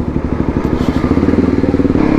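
Sport motorcycle's engine running under throttle as the bike pulls away, its pulsing note climbing steadily in pitch.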